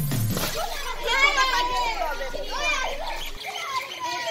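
Children shouting and squealing at play, their high-pitched voices loudest from about one to three seconds in.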